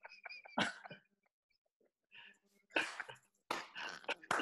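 Men laughing in short, separate bursts with silent gaps between them, over a video call.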